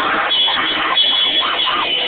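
A grind band playing loud and heavily distorted, with drums and cymbals under distorted guitar, in a muffled lo-fi recording.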